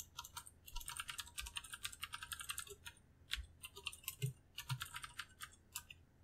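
Typing on a computer keyboard: quick runs of keystrokes, with a short lull a little after halfway.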